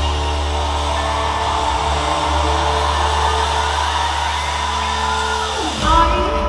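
Live rock band playing a slow instrumental passage: a sustained low bass drone under held electric guitar and keyboard tones, with a slowly rising line in the middle. A quick pitch sweep and a loud accent come just before the end.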